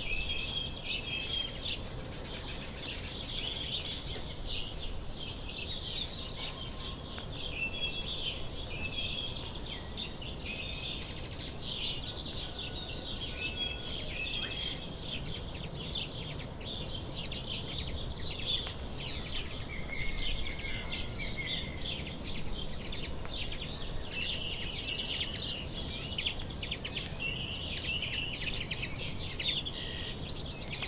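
A chorus of many small songbirds chirping and singing continuously, with overlapping short trills and calls, over a steady low background noise.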